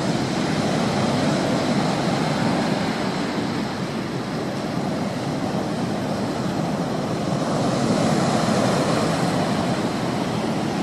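Steady rushing noise with no distinct tones or clicks, swelling a little near the end.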